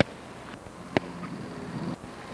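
A sharp crack about a second in, a bat hitting a softball during batting practice, over a steady low outdoor hiss.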